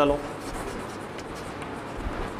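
Chalk writing on a chalkboard: a run of short scratches and light taps as a word is written.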